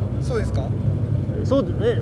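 A car engine running steadily at idle, a low even rumble under brief talk.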